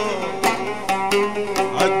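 A plucked lute plays a short run of picked notes between sung lines of Levantine 'ataba folk singing. A man's voice trails off at the start and comes back near the end.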